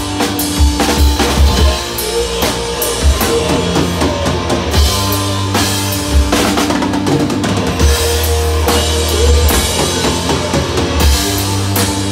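Live rock band playing an instrumental passage: electric guitars holding long, low chords over a drum kit with bass drum, snare and cymbal crashes.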